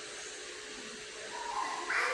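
Room tone of a museum gallery: a steady faint hum under a soft hiss. Faint voices rise in the last half second.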